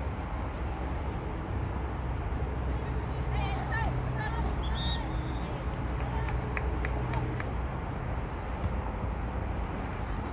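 Distant shouts and calls from players and spectators across an open sports field, over a steady low rumble of background noise.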